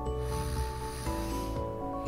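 Background music with steady held notes, over a faint hissing breath through the nose that stops about one and a half seconds in: a woman trying to snore with her lips closed and her jaw propped open on a positioning gauge, and barely managing it, since the opened airway makes snoring a little difficult.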